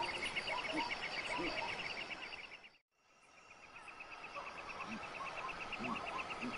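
Insects chirping in rapid, steady trains of pulses, with scattered short lower chirps among them. About halfway through, the sound cuts out abruptly and fades back in over about a second.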